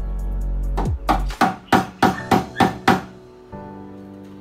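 Claw hammer driving nails into a plywood cabinet panel: a quick run of about seven blows, over background music.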